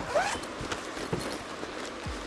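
Zipper on a plastic roller-skate carry bag being pulled open, with the stiff plastic bag rustling as it is handled.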